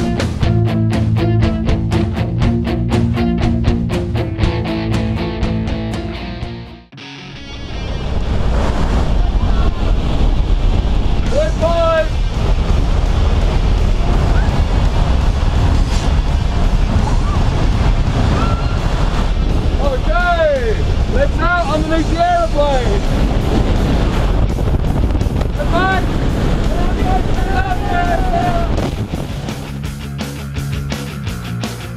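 Light aircraft engine droning steadily in the cabin. After a short break about seven seconds in, a loud rush of wind through the open jump door follows, with shouts that rise and fall in pitch.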